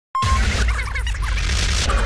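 Logo intro sting: a sudden hit with a deep boom and a rushing whoosh, carrying on as music under the animated title.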